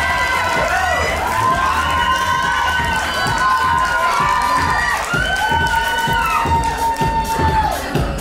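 Audience cheering, with long high whoops and shouts from many voices overlapping one another.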